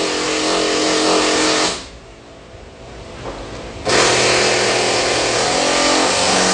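Loud machine noise, a steady motor hum with a hiss over it. It cuts off abruptly about two seconds in and starts again just as abruptly about two seconds later.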